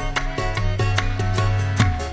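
Instrumental qawwali music: held harmonium-like notes over sharp hand-drum strokes, about four a second.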